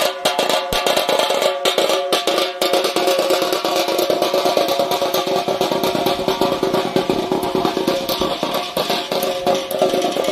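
Festival drumming: a double-headed drum beaten in a fast, continuous rhythm over a steady drone.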